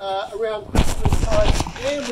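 A man's voice with a loud rumbling, crackling burst of noise through the middle of the clip.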